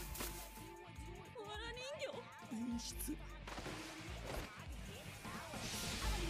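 The anime episode's soundtrack, played fairly quietly: subtitled Japanese character dialogue over background music.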